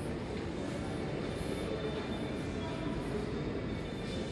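Steady low rumbling room noise with no clear speech, and a few faint thin tones here and there.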